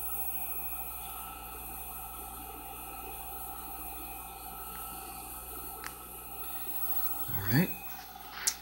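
Steady background hum and hiss, with one faint click about six seconds in; no stitching is heard.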